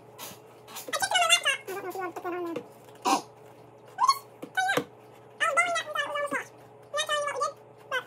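A string of high-pitched wordless vocal sounds, each under a second long, gliding up and down in pitch, with short pauses between them.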